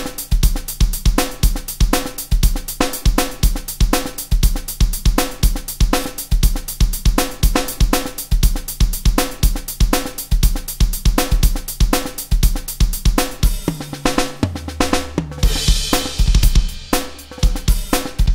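Sampled rock drum kit from the Rock Drum Machine 2 iPad app playing a programmed song pattern at 120 BPM: kick, snare, hi-hat and cymbals in a steady rock beat. About fourteen seconds in the pattern changes into a fill, with a longer cymbal wash and low ringing drums.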